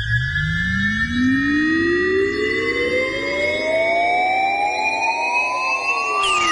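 Synthesizer riser opening a dance track. A low tone sweeps slowly and steadily upward in pitch, and higher held tones bend gradually up and down around it, giving a siren-like sound.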